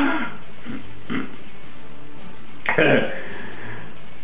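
A worn-out man's throaty vocal sounds: a short grunt about a second in, then a louder groan that falls in pitch near three seconds.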